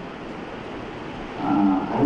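Steady background hiss of the room picked up through a microphone during a pause in a man's speech; his voice comes back about one and a half seconds in.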